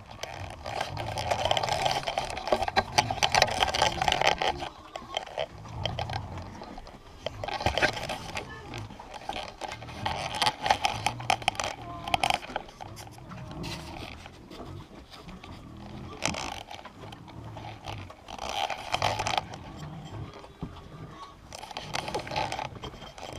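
Piglets grunting close by, with straw rustling as they root in the bedding. The sounds come in bursts of a few seconds.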